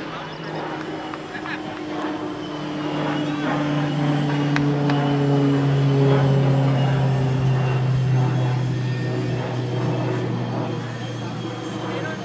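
A passing engine: a steady drone that slowly falls in pitch, swells to its loudest about halfway through and fades toward the end.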